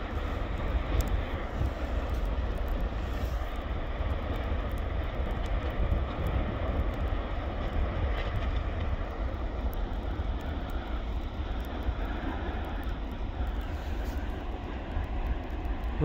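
Lava fountains at an erupting fissure vent giving a steady roar with a heavy low rumble.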